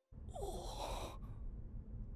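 A breathy sigh lasting about a second, followed by a low steady background hum.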